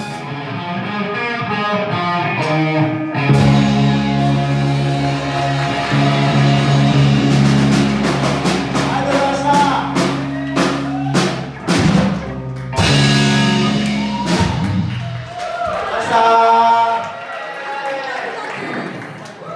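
Live rock band with electric guitars, bass, drum kit and singing, playing the closing bars of a song: a run of drum hits over held bass notes builds to a loud final chord near the end that then rings out.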